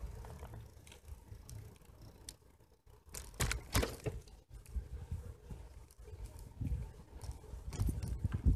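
Bicycle ride recorded from the bike: wind buffeting the microphone and tyres rolling on asphalt, with rattling knocks as the bike goes over bumps, the loudest cluster about three and a half seconds in and more near the end.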